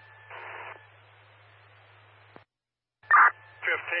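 Fire-department radio traffic over a scanner. A channel opens with static hiss and a low hum and carries a short burst of noise, then cuts off with a click about two and a half seconds in. Half a second later another transmission keys up with a loud burst, and a radio voice starts near the end.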